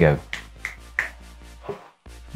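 Background music with a steady beat, with three short snapping clicks about a third of a second apart in the first second.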